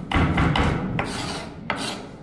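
A chef's knife scraping across a wooden cutting board, pushing together shredded cabbage, with three knocks of the blade on the board about a second apart.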